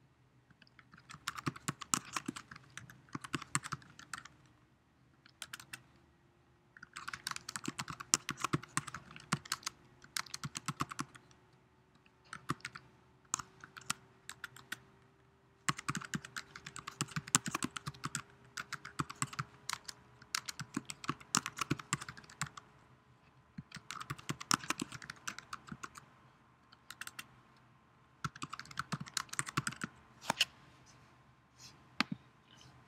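Typing on a computer keyboard: quick runs of key clicks broken by short pauses of a second or two.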